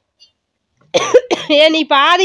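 A goat bleating: about a second in, a harsh rasping start followed by a long, loud, quavering bleat.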